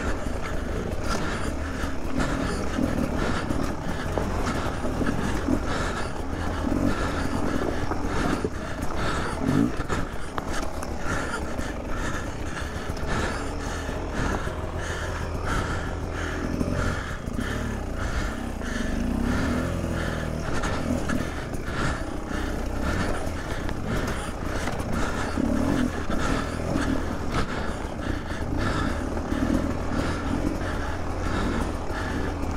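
Beta 300 RR two-stroke enduro bike engine running at low, uneven revs as it crawls over rock, the revs rising and falling with the throttle.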